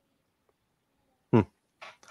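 Near silence, then a man's short 'hmm' with a falling pitch about a second and a half in, followed by a faint breath.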